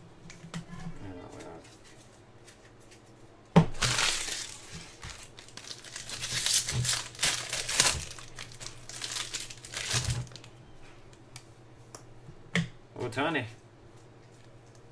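A foil-wrapped jumbo pack of baseball cards being torn open: a sudden sharp sound about three and a half seconds in, then several seconds of crinkling wrapper.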